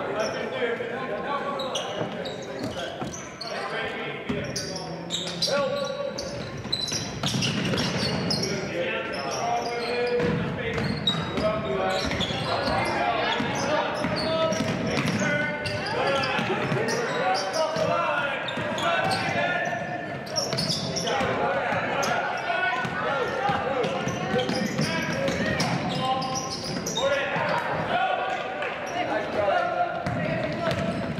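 A basketball dribbled on a hardwood gym floor, its bounces in quick repeated strikes, over steady background voices in the gym.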